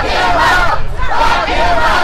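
Crowd of protesters chanting loudly, many voices shouting together in repeated bursts.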